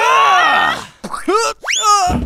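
Cartoon sound effects: a comic boing-like sound that bends up and then down in pitch for about a second, followed by quick steeply rising whistle slides from a cartoon siren whistle.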